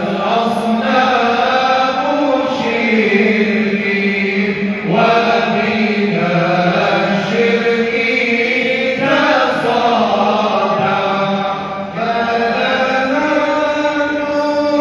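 A group of men singing together into microphones, a chant-like devotional song in long held notes, phrase after phrase with brief breaths between.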